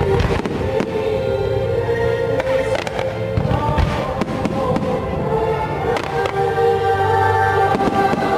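Aerial fireworks shells bursting in repeated bangs and crackles, the strongest bang a little before the middle, over loud show music with long held chords.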